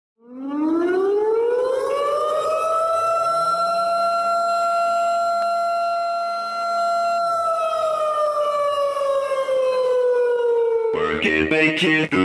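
Air-raid-style siren winding up over about two seconds, holding one steady pitch, then slowly winding down. Music with a beat cuts in near the end.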